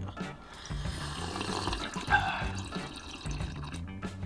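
Two people drinking, sipping and swallowing from a can and from a glass mug of ice, with music playing underneath.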